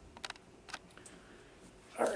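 Faint, scattered key clicks of typing on a computer keyboard, a few separate strokes in the first second and one more about a second in.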